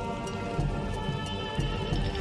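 Slot game music over a rapid clatter of clicks from the bonus wheel spinning and slowing down.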